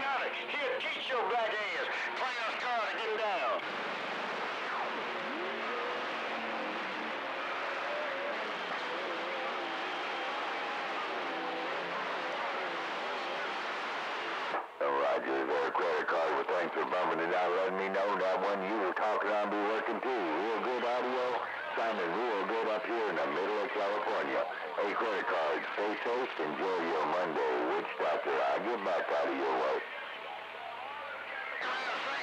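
Radio receiver tuned to CB channel 6 (27.025 MHz), carrying garbled, unintelligible voices from overlapping AM stations through static, with warbling tones over the speech. A brief dropout comes about halfway through, after which the voices come in stronger and busier.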